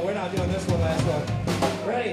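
Live rock band: a drum kit struck several times, about half a second apart, with cymbals and electric guitars ringing on, and voices underneath.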